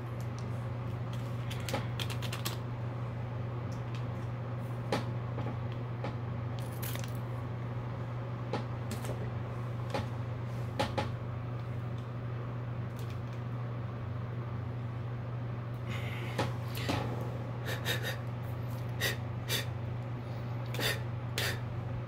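Scattered light clicks and taps of small craft items being handled on a work table, coming more often near the end, over a steady low hum.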